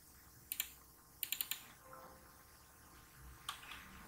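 Faint clicking from operating a computer: a single click about half a second in, a quick run of four clicks just after a second, and another click near the end.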